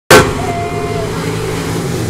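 Several dirt-track stock cars' V8 engines running hard as the field passes close by, loudest at the abrupt start and then a steady engine sound.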